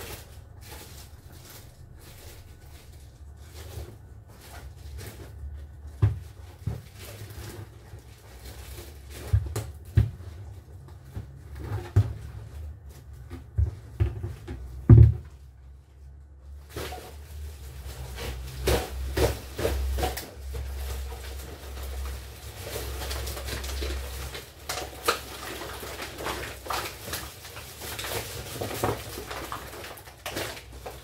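Scattered knocks, bumps and light clatter of household things being handled and set down, with one louder thump about halfway and busier clatter in the second half, over a low steady rumble.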